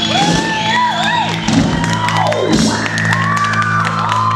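A live band holding a final sustained chord while the audience cheers and whoops, with voices gliding up and down in pitch over the music.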